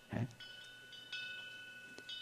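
Faint metallic chime ringing: a few high, clear tones start about half a second and a second in and hold steadily. A brief short sound comes just before them, right at the start.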